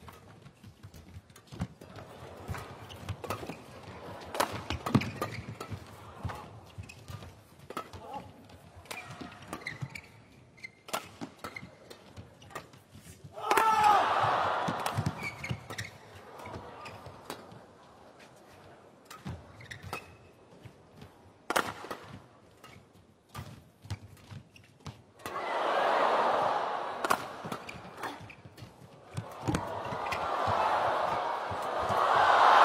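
Shuttlecock hit back and forth by badminton rackets in a long, fast rally, a string of sharp cracks. Arena crowd noise swells up about fourteen seconds in, again about twenty-five seconds in, and once more near the end.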